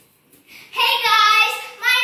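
A young girl's voice in a drawn-out, sing-song call: one long held note of about a second, then a second note starting near the end.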